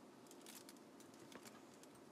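Faint, scattered clicking of computer keyboard keys, a small cluster about half a second in and another around a second and a half, over faint steady room noise.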